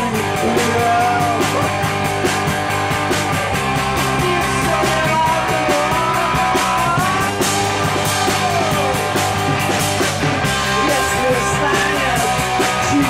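Rock song performed live: a man singing over guitar with a steady driving beat.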